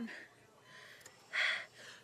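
A woman's short, noisy breath about one and a half seconds in, as she strains while pushing in labor.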